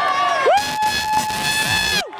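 Men's voices yelling encouragement to a gymnast: a short shout, then one long, high held yell from about half a second in.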